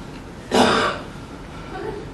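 A person clearing their throat with one short, harsh cough about half a second in.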